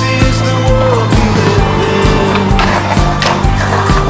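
Music with a steady beat, with a skateboard heard under it: wheels rolling on pavement and a few sharp knocks of the board.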